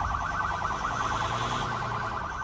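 Police siren sounding a rapid, even warble, heard from inside the patrol car during a pursuit, over low road and engine rumble.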